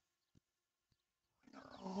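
Near silence with a faint click about a third of a second in; a man's voice starts just before the end.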